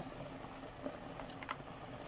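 Faint sounds of a wooden spoon working thick cornmeal mush (mămăligă) in a pot, with a few light clicks.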